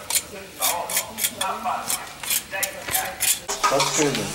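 A blunt knife scraping the old dead bark off a grapevine branch in quick repeated strokes, about two to three a second, to expose the wood so the vine will bud.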